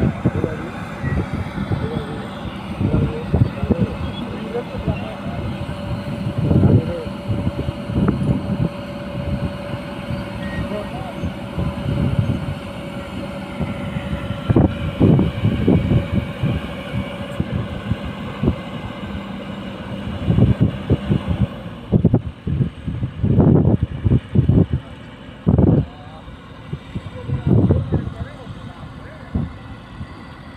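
Kobelco excavator's diesel engine running with irregular surges in level as it lifts and lowers a precast concrete sheet pile on a strap. People's voices come and go over it.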